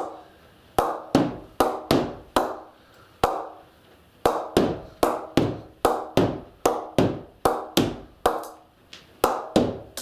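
A leather cricket ball tapped over and over on the face of a new Kippax Players Edition Genesis English willow cricket bat. About twenty sharp knocks come at roughly three a second, with a short pause a few seconds in, each ringing out briefly. It is the clear "ping" of a bat that comes off well, which he calls fantastic.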